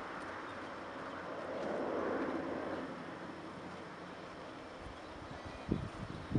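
Outdoor background noise on open ground: a broad rushing sound swells and fades about two seconds in, and a short low thump comes near the end.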